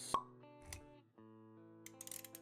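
Intro-animation sound effects over background music of held notes: a sharp pop just after the start, then a softer low thump under a second in.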